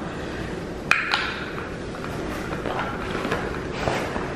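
A sharp click about a second in, followed by a fainter one, over a steady hiss of room noise.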